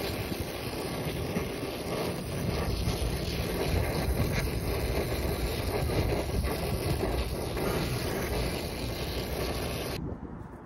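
Brazing torch flame hissing steadily on a copper refrigerant line joint at a liquid-line filter drier as the joint is brazed.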